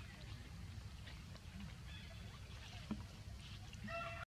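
Dry leaf litter rustling faintly as a baby macaque handles leaves, over a steady low rumble, with a short high-pitched call right at the end.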